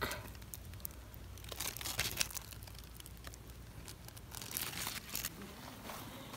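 Faint rustling and crackling of zucchini leaves and stems being handled, with scattered small snaps.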